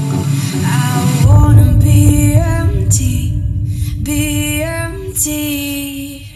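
A song with female singing played back through an Electro-Voice Evolve 50 powered column speaker array, with a heavy bass line coming in a little over a second in.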